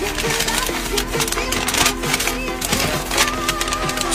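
Background music with steady held notes, over the crackling rustle of a folded paper note being unfolded by hand.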